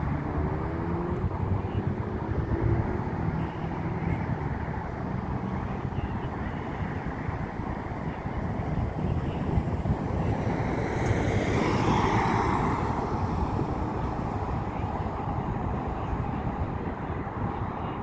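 Steady road-traffic rumble with wind noise on the microphone. A rushing swell builds from about ten seconds in, peaks a couple of seconds later, then fades.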